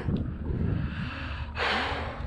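A man lets out one short, hard breath, a sigh of dismay at a lost fish, about one and a half seconds in. A low wind rumble on the microphone runs underneath.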